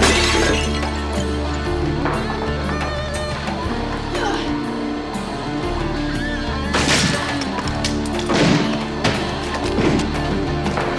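Dramatic score music with sustained tones, over a series of sudden crashes of things being smashed and glass shattering. The heaviest crash comes about seven seconds in.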